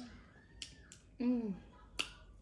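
Wet mouth clicks and smacks from eating and sucking food off the fingertips: a few separate sharp clicks, with a short falling 'mm' hum of enjoyment about a second in.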